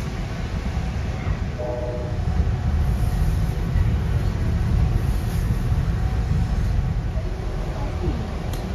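Steady low rumble of a moving passenger train heard from inside the carriage, with a brief higher tone about two seconds in.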